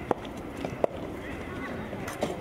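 Soft tennis rally: the soft rubber ball pops sharply off racket strings and the court. There are two loud hits under a second apart in the first second, then fainter taps.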